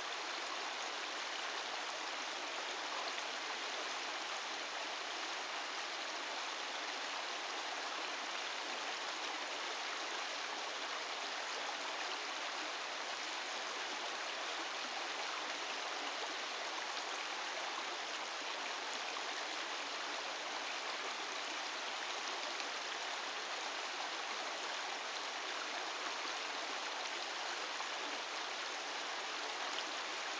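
Shallow creek water running steadily over rocks in a riffle.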